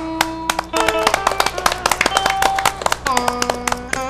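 Instrumental opening of a vọng cổ song in Vietnamese cải lương style: quick runs of plucked notes on electric guitar and đàn sến.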